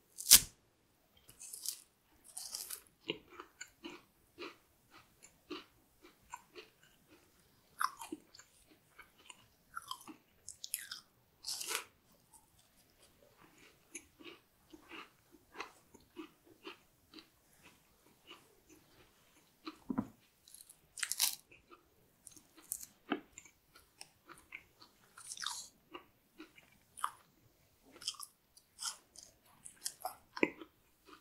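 Close-miked chewing of a chocolate-coated sponge cake: a sharp crack just after the start as the chocolate shell is bitten through, then irregular mouth clicks and small crunches, with a few louder crunches scattered through.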